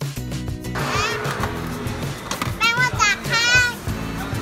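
Background music, with a young child's high-pitched voice calling out in short excited bursts from about a second in.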